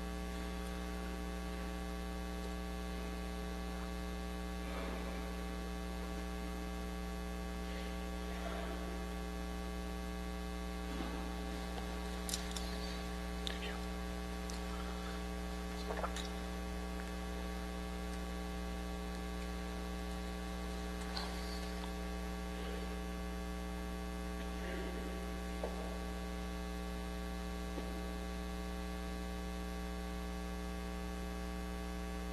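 Steady electrical mains hum, made of several unchanging tones, with a few faint scattered clicks and knocks in the middle.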